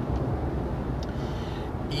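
Steady low rumble of a car driving at highway speed: engine and tyre road noise.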